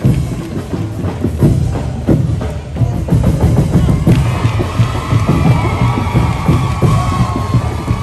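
Festival street-dance drum ensemble playing a fast, dense beat with heavy bass drum strokes. Higher, wavering pitched sounds join about halfway through.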